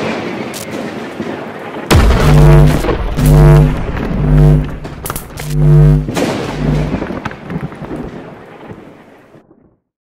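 Logo-intro sound effects: a crackling thunder-like rumble, then a low brass-like stinger of four heavy notes over booming bass hits, trailing off and fading out near the end.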